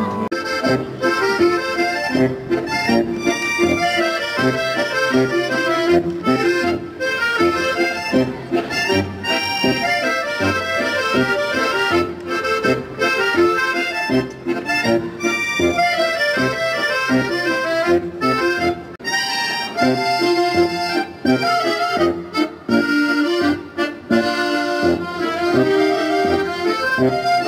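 Youth accordion orchestra playing a brisk, rhythmic tune in many parts, with a drum kit keeping the beat.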